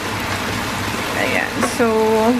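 Prawns sizzling steadily in butter, onion and garlic in a frying pan as they are stirred with a spatula. A voice starts near the end.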